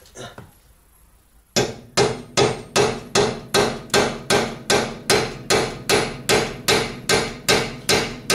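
Quick, even hammer blows on steel, about two and a half a second, starting about a second and a half in, each with a short metallic ring: hammering out a bolt seized in an Audi A6's front suspension.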